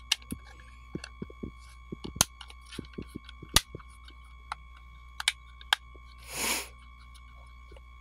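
Plastic clicks and snaps as a plastic front face plate is pressed onto a pool pump's keypad and display assembly, its tabs clicking into place: an irregular scatter of sharp clicks, the loudest about three and a half seconds in. A short rush of noise follows near the end.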